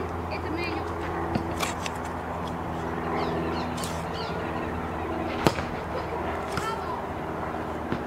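A single sharp smack of a baseball bat hitting a basketball, about five and a half seconds in, over a steady low hum.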